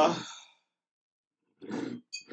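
A man's drawn-out 'uh' trails off, then after a pause a short sigh is heard near the end.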